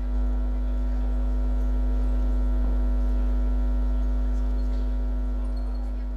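Loud, steady electrical mains hum in the audio feed: a deep drone at about 50 Hz with a steady higher buzz tone above it. It eases off slightly toward the end.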